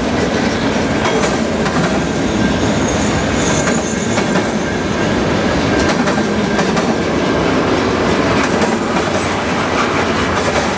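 Freight cars of a passing freight train, centerbeam flatcars and then tank cars, rolling by close at hand: a loud, steady rumble and clatter of steel wheels on the rails. A brief high-pitched squeal comes about three and a half seconds in.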